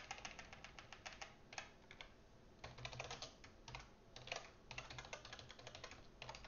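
Faint typing on a computer keyboard: quick runs of key clicks, with a brief pause about two seconds in.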